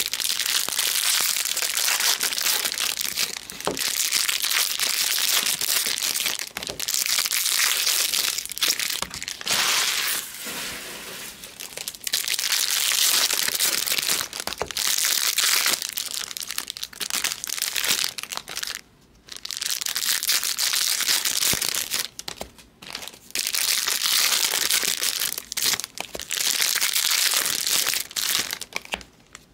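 Foil wrappers of Bowman Draft Jumbo trading-card packs being torn open and crinkled by hand, in spells of several seconds with short breaks between them.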